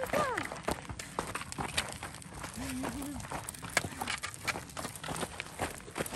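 Footsteps and dogs' paws on loose desert gravel: irregular crunches and clicks as people and dogs walk along the trail.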